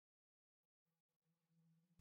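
Near silence: a gap between narrated sentences, with only an extremely faint hum.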